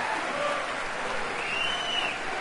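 Large theatre audience applauding, many people clapping steadily at once.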